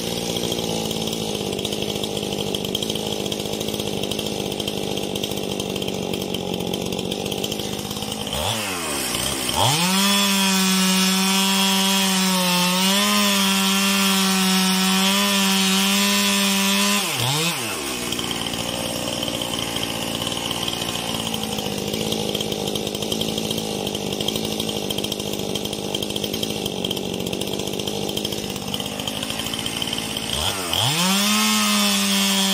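STIHL MS 271 two-stroke chainsaw running at high throttle, ripping a log lengthwise along the grain. The engine note dips and picks up again about nine seconds in and again around seventeen seconds, running louder and steadier between the two dips.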